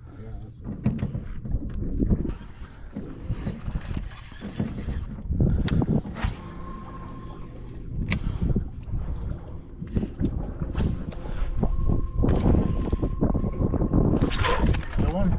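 Wind rumbling on the microphone over water lapping at an aluminium boat, with scattered clicks and the thin whir of a baitcasting reel as a lure is cast and reeled in, once around the middle and again near the end.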